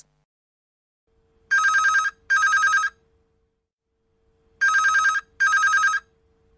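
Telephone ringing with a double ring: two pairs of short trilling rings, about three seconds apart.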